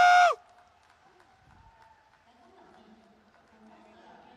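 A loud, high-pitched shout held on one note cuts off abruptly about a third of a second in. Near silence with only faint hall sound follows.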